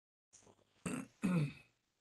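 A person clearing their throat in two short rasps about a second in.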